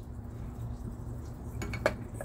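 A few light metallic clicks and a clink in the last half second, as an aluminium air-cleaner spacer ring is handled against a carburetor's air cleaner, over a low steady background rumble.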